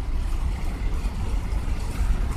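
Wind buffeting the microphone: a steady, uneven low rumble with no other distinct sound.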